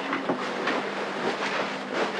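Rustling of a fabric duvet being shaken out and spread over a bed, a steady swishing noise with a faint low hum underneath.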